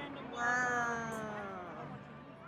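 One long bleat, sliding down in pitch, from a farm animal in a petting-zoo pen.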